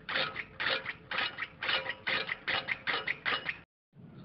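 Restored 1930s hand-cranked greens cutter being turned over, its freshly greased gear and spring-pawl mechanism clicking and clattering in a steady rhythm. The clicks come about twice a second and quicken toward the end.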